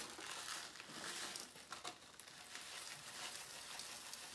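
A plastic bag of shellac flakes crinkling and rustling irregularly as it is handled and tipped.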